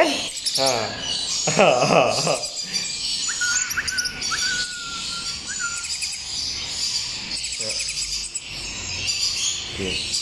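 Red-flanked lorikeets chattering with rapid, high-pitched chirps throughout, with a louder wavering vocal sound about two seconds in and a thin steady whistle for a couple of seconds in the middle.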